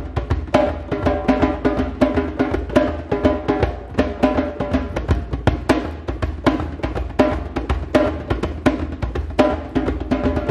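Hand drum played with bare hands in a fast, steady rhythm of sharp strokes, several a second, with ringing tones under the strokes.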